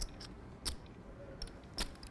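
Clay poker chips clicking together in four or five sharp, separate clacks as a player handles his stack at the table.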